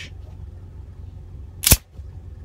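Slide of a Ruger LCP II .380 ACP pocket pistol racked back hard by hand and snapping forward, heard as one sharp metallic clack near the end, cycling a round out of the chamber.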